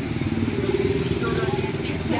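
A motorcycle engine running close by, fading near the end, with people's voices in the background.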